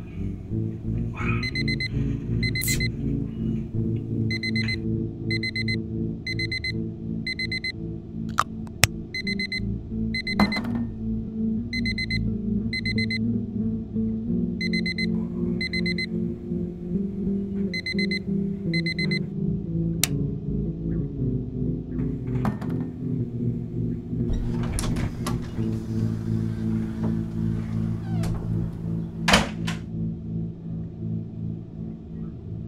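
Electronic alarm clock beeping: short high beeps about a second apart, in runs of two to four, stopping a little past halfway. Steady low film music runs underneath, with a few sharp knocks.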